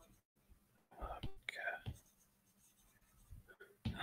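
Mostly quiet, with a man's soft muttering in two short bursts about a second in.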